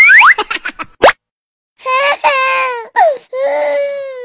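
A quick rising cartoon sound effect and a few short pops, then, after a pause, a baby crying in long wails that fall in pitch.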